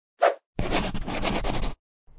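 Intro sound effects: a brief swish, then about a second of rapid, rasping scratching that stops abruptly.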